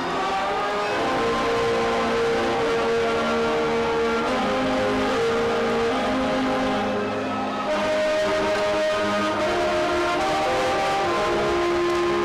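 School band playing slow, sustained chords, each note held for a second or two before the harmony moves on.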